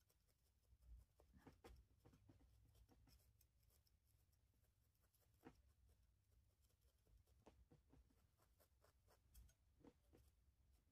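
Very faint, irregular ticks and scratches of a felting needle being stabbed into wool, working fibre into a felted piece.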